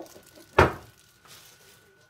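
A single sharp knock about half a second in, as a small plastic food tub is set down on the kitchen counter.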